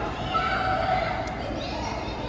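Children's high-pitched voices calling out, with a rising squeal near the end.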